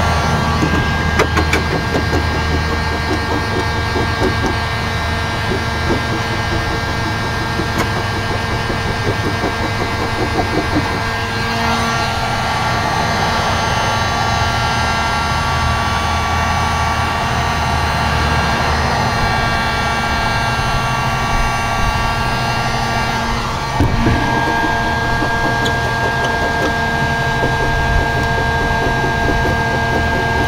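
A 1500-watt electric heat gun running steadily, its fan blowing a steady whine of hot air over vinyl decals on car paint. The whine shifts in pitch about a dozen seconds in and again with a short knock about two-thirds of the way through.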